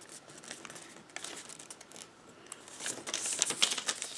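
Sheet of origami paper rustling and crinkling as it is creased and folded by hand, with small crackles, faint at first and louder in the last second or so.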